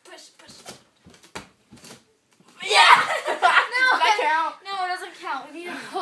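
A few faint knocks and shuffles, then from about two and a half seconds in, two girls laughing loudly.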